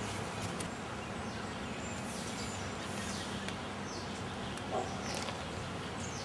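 Steady outdoor background hiss, with a few faint bird chirps about two to three seconds in.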